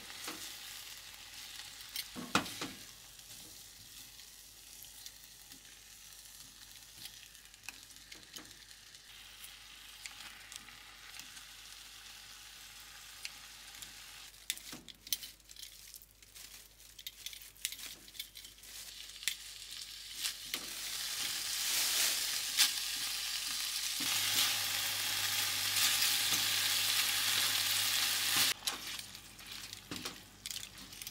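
Marinated beef frying in a ceramic nonstick frying pan: a steady sizzle with sharp clicks of tongs turning the meat. The sizzle grows much louder about two-thirds through, as a second batch of marinated sliced meat is stir-fried.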